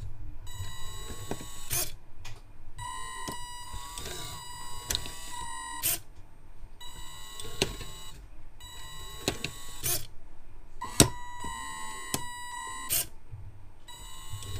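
Electric motors of a Makeblock-and-LEGO brick-testing machine running its test loop: a whining tone that bends up and down in pitch, repeating in cycles of about two seconds with short pauses between. A sharp click or knock comes in each cycle, the loudest about eleven seconds in.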